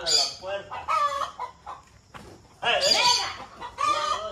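Chickens clucking, in a few separate calls that rise and fall in pitch, about a second in and again around three seconds in.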